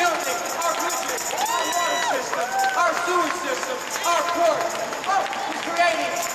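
A man's speech carried over a public-address system in a large arena, heard from the audience seats.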